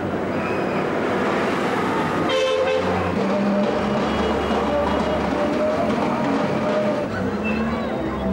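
Busy city street traffic noise, with a short vehicle horn toot about two and a half seconds in and further held horn tones after it.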